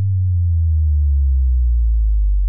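Deep synthesized bass tone of an end-card logo sting, starting suddenly and sliding slowly down in pitch.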